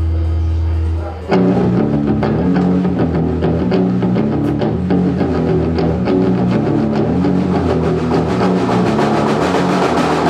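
Live rock band: a steady low note is held for about the first second, then electric guitar and drum kit come in together, playing a driving rhythmic riff.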